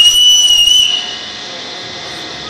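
A loud, shrill whistling tone, held just under a second and rising slightly at its end, followed by a steady rushing noise of a railway station.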